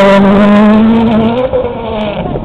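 Ford Fiesta RS WRC rally car's 1.6-litre turbocharged four-cylinder engine running hard at high, steady revs as the car pulls away. The engine note drops off sharply about one and a half seconds in.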